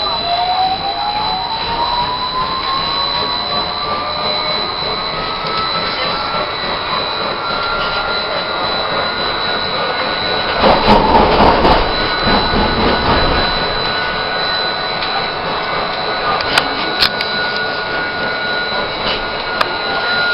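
Electric streetcar's traction motor whine rising in pitch as the car accelerates, then levelling off into a steady whine, with a steady high-pitched tone above it. About halfway through, a louder rumble lasts some three seconds, and a few sharp clicks come near the end.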